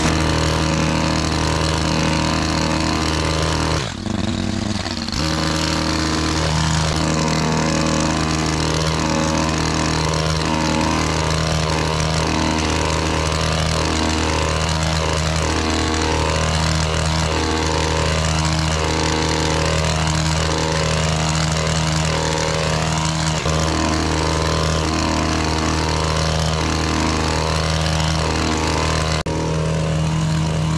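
Stihl petrol hedge trimmer running steadily at high speed while cutting a beech hedge, with a brief drop in the sound about four seconds in.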